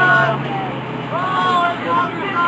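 City street ambience: other people's voices talking over a steady low hum of traffic.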